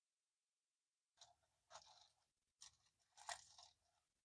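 Faint crunching and chewing while eating a fish sandwich of crispy coated Alaskan pollock, in two spells of about a second each, starting about a second in.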